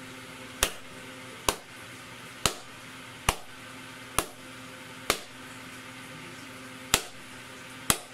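Single hand claps, about one a second with one longer pause, each triggering a sound-activated crystal ball light to change colour. A faint steady hum runs underneath.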